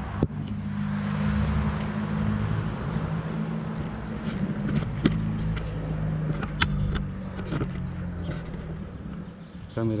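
Road traffic on the adjacent street: a car passing over a steady, low engine hum, which fades slowly, with a few sharp clicks.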